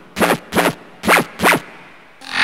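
Hardstyle track intro: four short acid-style synth notes, each brightening and then dulling as its filter sweeps, about two a second, with no drums under them.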